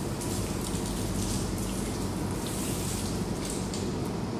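Tap water running and splashing onto hands being washed at a sink.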